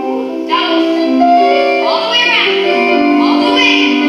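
Piano accompaniment for a ballet barre exercise, with sustained chords, and a high voice singing three short gliding phrases over it.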